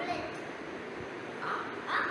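A crow cawing, two short harsh calls close together near the end, over a steady background hiss.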